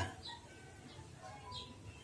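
Quiet background with a few faint, short bird chirps.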